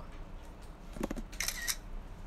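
Smartphone camera-shutter sound as a screenshot is taken: a short bright click about one and a half seconds in, just after a soft low knock.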